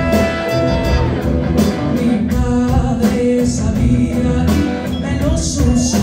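A live band playing a song: drums keeping a steady beat, bass, electric guitar and horns, with a woman singing over them.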